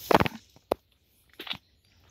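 A brief voice sound at the start, then a sharp snap less than a second in and a few faint crackles about halfway through, like twigs and dry brush cracking underfoot while walking through woodland undergrowth.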